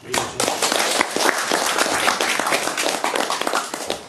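Audience clapping, starting suddenly and dying away near the end.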